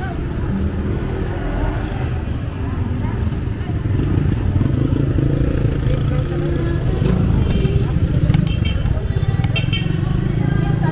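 Motorcycles and motorcycle-sidecar tricycles passing along a street with their small engines running, a steady rumble that grows louder partway through. A few sharp clicks come near the end.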